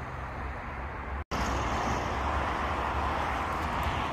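Steady outdoor background noise with a low hum underneath, the kind of distant road-traffic rumble heard outdoors in a town at night. The sound cuts out completely for an instant about a second in, then returns slightly louder.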